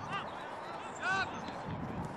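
Two short shouts from players on an outdoor football pitch, one at the start and one about a second in, over faint open-air background noise.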